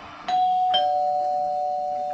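Two-note doorbell chime: a higher ding about a quarter second in, then a lower dong, both ringing on and slowly fading.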